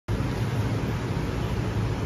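Steady low rumble with an even hiss over it: outdoor background noise, with no distinct event.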